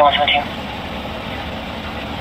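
A parked patrol car's engine idling, heard from inside the cabin as a steady low hum. A voice ends a word at the very start.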